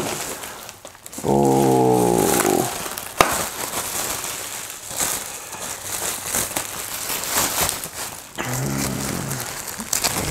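Plastic bubble wrap being pulled apart and unwrapped by hand, crinkling and rustling, with a sharp snap about three seconds in. A man's drawn-out wordless voice sounds loudest about a second in, and again more briefly near the end.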